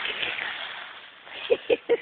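Dry fallen leaves rustling as a puppy digs and burrows its nose in them, the rustle dying away after about a second. A person laughs near the end.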